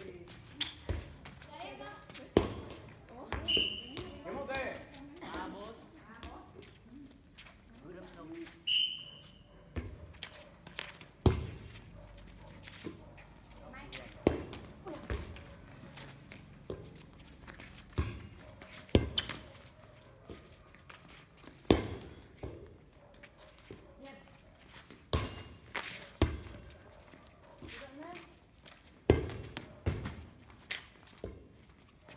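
An inflatable air volleyball being struck by hands during a rally. Sharp slaps come one to three seconds apart throughout.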